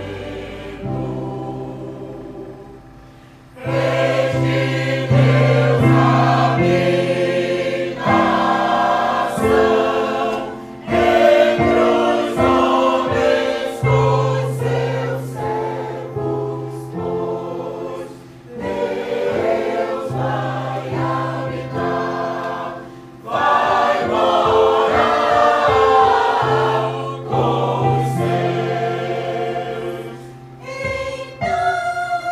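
A choir of mostly women's voices singing with electronic keyboard accompaniment. It is quiet for the first few seconds, then the full choir comes in about four seconds in, and the phrases break off and start again several times.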